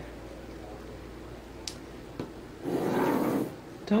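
Pencil and plastic ruler working on a sheet of paper: two light clicks, then a brief rubbing, scratching stroke of under a second about three seconds in.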